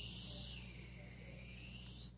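Felt-tip pen squeaking on paper as it draws one long line: a high, steady squeal that dips slightly in pitch and rises again near the end.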